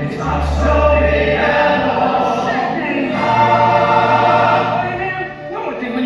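Musical-theatre ensemble singing together in chorus over instrumental backing, with held bass notes under the voices. The sound dips briefly near the end.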